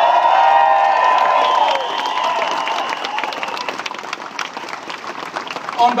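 A large crowd clapping and cheering. The cheers are loudest in the first couple of seconds, then the clapping carries on and slowly dies down.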